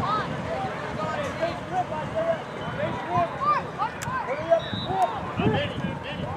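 Indistinct shouting and calling from many voices of youth football players and sideline spectators, short overlapping shouts with no clear words. A single sharp click comes about four seconds in.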